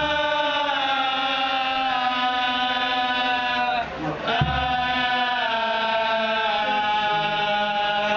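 Male voices chanting a selawat together in long held notes that glide slowly in pitch, with a brief pause for breath about four seconds in. The kompang frame drums are held silent, so the voices are unaccompanied.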